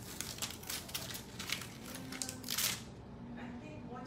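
An adhesive plastic stencil being peeled off a painted surfboard cutout: a run of crinkling, crackling plastic, loudest about two and a half seconds in, then dying away.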